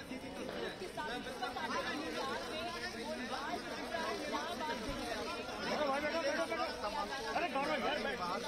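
Indistinct chatter of many people talking at once, overlapping voices with no single speaker standing out.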